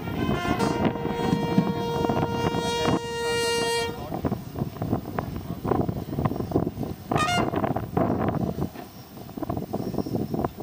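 A brass instrument holds one long steady note for about three seconds over the steady tramp of marching feet. About seven seconds in, a voice gives a brief shouted call.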